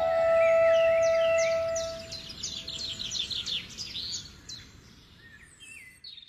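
A flute's long held note fades away over the first two seconds while birds chirp in quick repeated calls. The chirping thins out and fades to quiet near the end.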